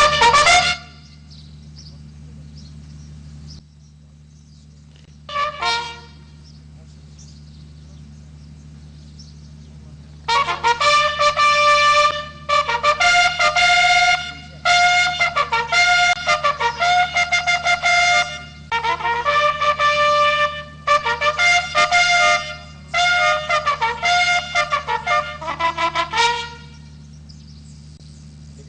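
Military bugle call sounded for honours: after a brief note about five seconds in, a long call of short and held notes in repeated phrases from about ten seconds in until near the end.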